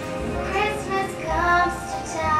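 A child's voice singing a song from an animated Christmas film, with instrumental backing, played back from a television in the room.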